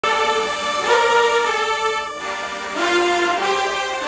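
Marching band playing loud sustained brass chords. The chord breaks off a little after two seconds in, and a new phrase starts shortly after.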